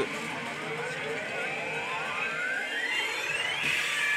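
Yoshimune 3 pachislot machine's sound effect: a whine rising steadily in pitch for about three seconds, breaking into a brighter burst near the end, over a steady hall noise.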